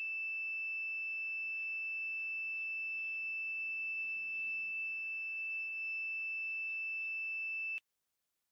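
A 5-volt electronic buzzer on a soil-moisture alarm gives one steady high-pitched tone that cuts off suddenly near the end. It stops because the water poured into the soil has raised the moisture above the set threshold.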